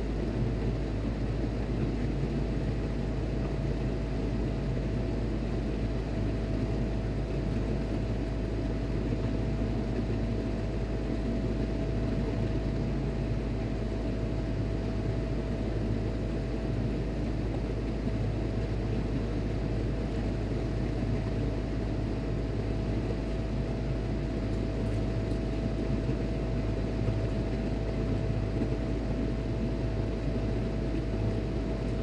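Steady drone of running shipboard machinery: a constant low rumble with a single steady hum above it, unchanging throughout.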